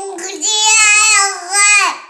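A baby's long, drawn-out vocal 'aah', held steady with a slight wobble for about a second and a half, then falling away at the end.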